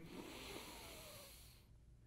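A man taking a slow, deep breath in, heard as a faint hiss that fades out and stops shortly before the end.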